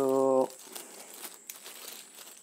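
A short spoken word in the first half second, then a small clear plastic accessory bag crinkling in the hands with light, scattered crackles.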